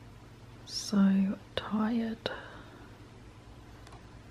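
A person's voice saying a short two-part word or phrase, softly, about a second in, set off by a hiss at the start and a couple of light clicks; a faint low steady hum of room tone lies underneath.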